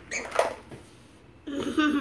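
Speech only: two short bits of voice, one about half a second in and one near the end, with a quiet room between them.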